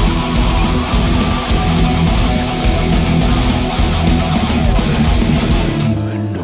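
Heavy metal: an electric guitar played on a Les Paul-style guitar, riffing along with a full band recording with drums and bass.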